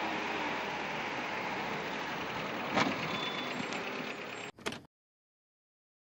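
Street traffic with car engines running, a single knock about three seconds in; the sound cuts off suddenly shortly before five seconds.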